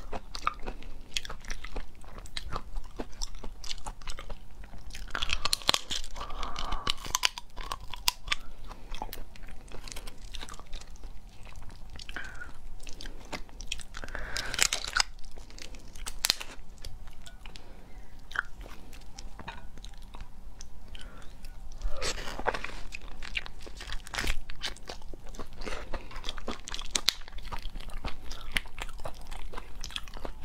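Close-up eating sounds of raw spiny lobster meat: biting and chewing, with frequent short clicks and crackles from the tail shell as the meat is pulled out of it.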